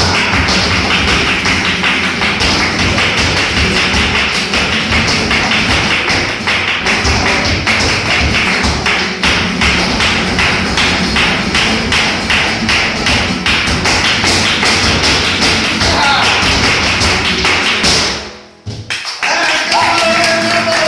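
Flamenco performance: the dancer's rapid heel-and-toe footwork (zapateado) drums on the stage over Spanish guitar and hand clapping. The footwork stops suddenly about 18 seconds in, and after a brief near-silent break the guitar and a voice come back in.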